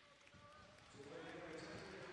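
The report of the starter's pistol at an indoor 400 m race fades away in the arena's echo. From about a second in, the noise of the crowd and voices rises as the race gets under way.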